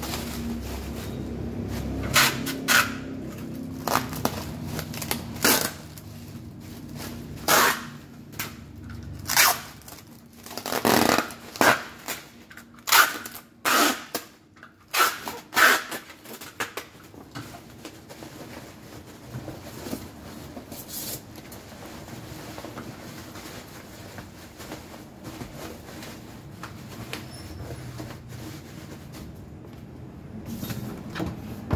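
Bubble wrap rustling and crinkling in short irregular bursts as it is handled and folded around a guitar gig bag. The bursts are busiest in the first half, then give way to a quiet steady background.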